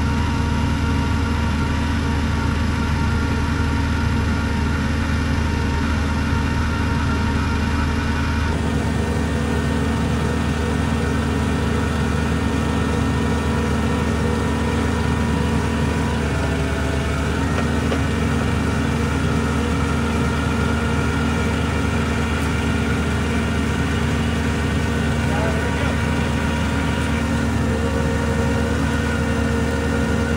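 Engine of a geothermal borehole drilling rig running steadily while it drills.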